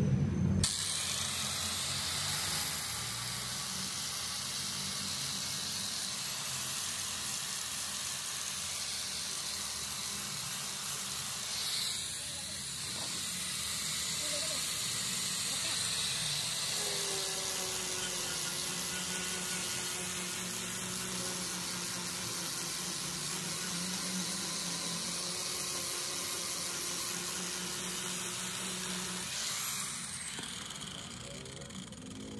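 A steady hiss, with a low hum underneath in the second half.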